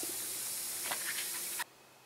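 Calcite crystals fizzing in acid, a steady hiss of bubbling that cuts off suddenly about one and a half seconds in. The fizzing is the reaction that marks them as calcite.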